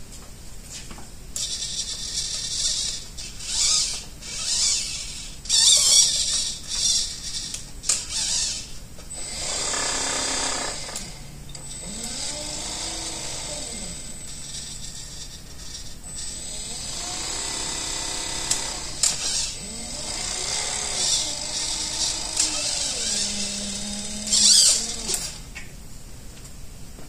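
Trolling motor under joystick test: the servo steering buzzes in short high-pitched bursts as it swings the shaft. Then the ESC-driven propeller motor spins up and back down several times, its whine rising and falling in pitch.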